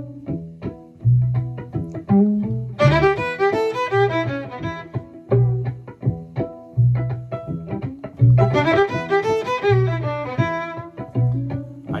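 Fiddle playing two short bluesy phrases in E, one about three seconds in and one about eight seconds in, with gaps between them. A backing groove with a pulsing bass line runs underneath.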